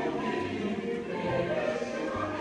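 Choir music with held, overlapping voices over a low bass line that changes note every half second or so.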